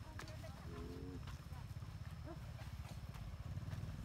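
Small motorcycle engine running at idle with a low, rapid putter, and faint voices calling in the background.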